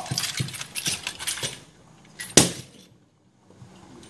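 A hand-held wooden divination chair clattering in a run of rapid knocks against a wooden table, then one loud sharp strike about two and a half seconds in.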